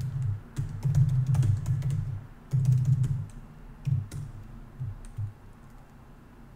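Typing on a MacBook laptop keyboard: quick keystroke clicks with dull low thumps, in irregular runs that thin out after about three seconds.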